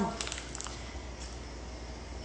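Faint handling of a plastic food pouch as fingers pull a seasoned salmon fillet out of it: a few small clicks and crinkles within the first second, then quiet soft rustling and squishing.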